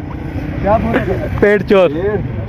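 Men's voices in excited, unclear speech or laughter, over a steady low rumble.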